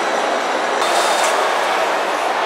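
Steady, loud hubbub of a crowded shopping mall atrium: many voices and footsteps blended into an echoing wash, with a brief brighter hiss a little under a second in.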